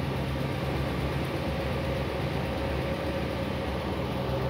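2014 Ram 1500's 5.7-litre Hemi V8 idling steadily.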